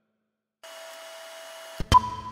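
Sound effect for an animated logo: after a moment of silence, a steady electric hum with a high whine, ending in two sharp hits near the end, the second loud, which leave a ringing tone.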